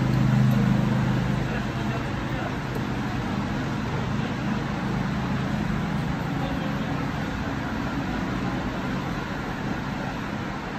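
Steady background road-traffic noise, with a low vehicle hum that is strongest at the start and fades over the first couple of seconds.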